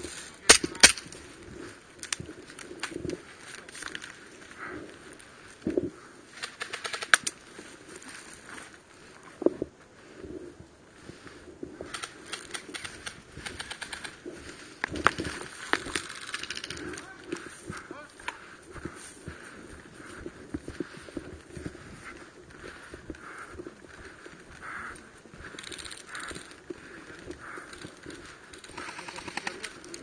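Airsoft gunfire: two sharp cracks close together about half a second in, then a few more scattered shots later, over the rustle and footfalls of a player moving through grass and faint distant voices.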